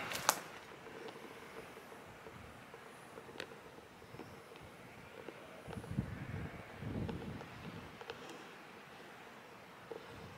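Quiet outdoor ambience with a faint steady background, a sharp click just after the start and a few soft low thuds about six to seven seconds in.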